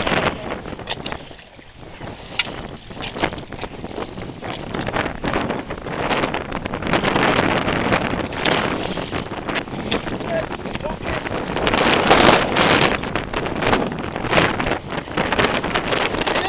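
Water splashing and sloshing against a boat's hull as a hooked shark is handled at the surface and netted, in irregular bursts that grow louder after the first couple of seconds, with wind buffeting the microphone.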